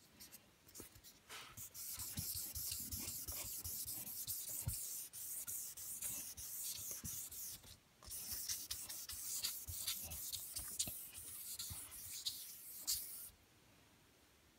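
Fine 4000-grit wet-and-dry sandpaper rubbed back and forth by hand on a wet guitar finish, making a soft, hissing scrape of quick strokes. This is wet-sanding out scratches before polishing. The strokes pause briefly about eight seconds in and stop shortly before the end.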